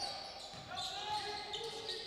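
Live court sound of a basketball game: sneakers squeaking on the hardwood floor in drawn-out tones, with the ball bouncing.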